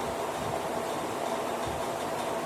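Steady background hiss with a faint, even hum underneath and no distinct events.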